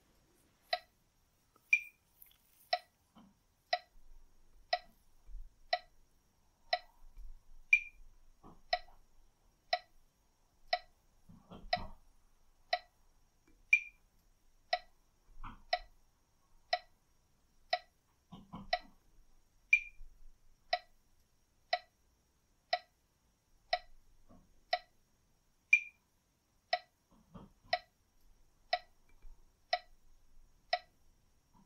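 Metronome clicking steadily about once a second, every sixth click a higher, accented one that marks the switch from in-breath to out-breath.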